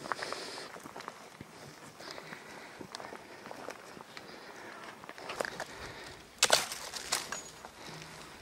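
Footsteps crunching on a dry forest trail, with twigs and brush crackling against the walker as he moves into thick undergrowth; the loudest crackle comes about six and a half seconds in.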